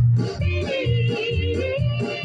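A 45 RPM vinyl single playing an early-1960s rhythm-and-blues vocal group record. A lead voice holds a high, wavering line over a steady bass and drum beat.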